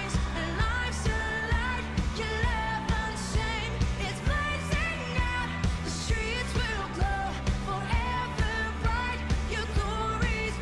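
A song played by a band with a singer, over bass and a steady beat of about two strokes a second.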